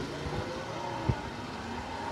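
Street background noise with a motor vehicle engine running steadily, and one short thump about a second in.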